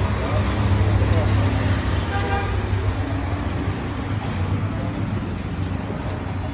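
Street traffic with a steady low engine rumble, and a short vehicle horn toot about two seconds in.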